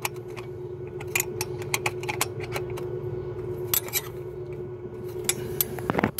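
Irregular metallic clicks, about three or four a second, of a hand tool working the thermostat housing bolts as they are tightened, over a steady low hum that stops near the end.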